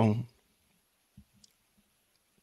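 A man's voice trails off just after the start. Then it is nearly quiet, with a few faint short clicks and soft taps in the second half.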